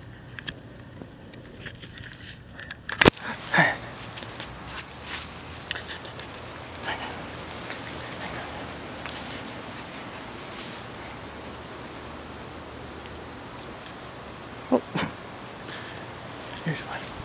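Toy schnauzer puppies playing on grass, with a few brief, high vocal sounds about three and a half seconds in and again near the end. A sharp click about three seconds in is followed by a steady hiss.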